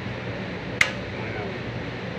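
A single sharp switch click about a second in, over a steady low hum.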